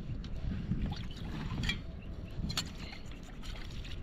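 Wind noise on the microphone, with a few short clinks and knocks from metal dishes being handled.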